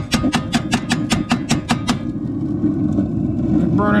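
RV propane water heater burner running with a steady low rumble, its spark igniter clicking about four times a second for the first two seconds. Bugs in the burner are burning off in the flame, after a rich-burning flame that the technician puts down to spiders clogging the burner tube.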